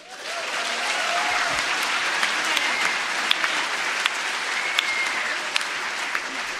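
Audience applauding, swelling in within the first second and holding steady.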